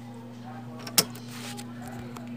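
A single sharp click about halfway through, over a steady low hum.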